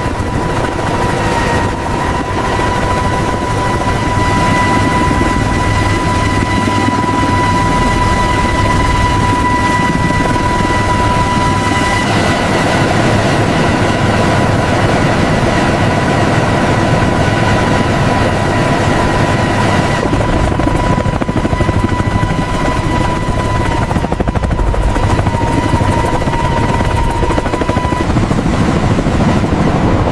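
Sikorsky CH-53K King Stallion helicopter in flight: steady rotor and turboshaft engine noise with a high, steady turbine whine. The sound shifts character a few times.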